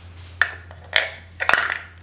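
Toy pieces knocking against a wooden shape-sorter box as a toddler handles them: a few short, sharp clacks, spaced about half a second apart.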